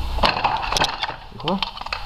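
Sharp metallic clicks and clinks of a spanner working the fuel feed fitting on an engine's fuel rail, with a short vocal sound about a second and a half in. A low hum cuts off just after the start.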